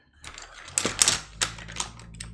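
Hard coloured drawing sticks clicking and clattering against each other and a clear plastic tub as they are rummaged through in search of a particular green. There is a quick run of sharp clicks from just under a second in to near the end.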